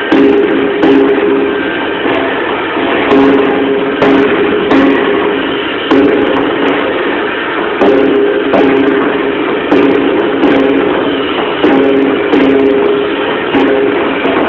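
Music with a strummed stringed instrument, chords struck in a steady rhythm about once a second.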